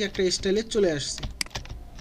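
A short stretch of untranscribed voice in the first second, then a few sharp computer keyboard clicks.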